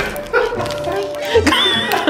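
Background music with short high-pitched vocal cries over it.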